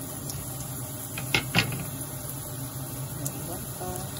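Sliced onions sizzling in hot oil in a frying pan, a steady frying hiss, with two sharp knocks close together about a second and a half in.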